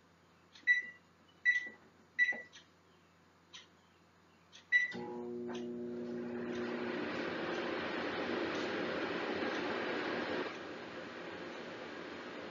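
Over-the-range microwave oven: a few keypad beeps as its buttons are pressed, then it starts up and runs with a steady hum and fan noise, a little quieter from about ten seconds in.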